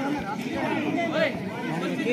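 Chatter of spectators and players: several voices talking over each other at a low level, with no single clear speaker.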